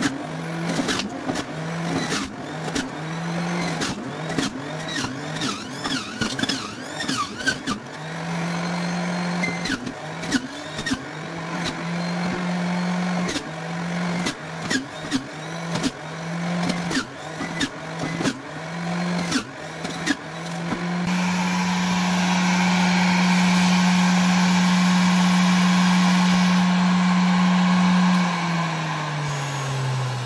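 Electric juicer motor running while carrot chunks and orange wedges are pushed into it, crunching as they are shredded, its hum dipping about once a second under each load. From about two-thirds of the way in it runs steadily with nothing being fed. Near the end it is switched off and its hum falls in pitch as it winds down.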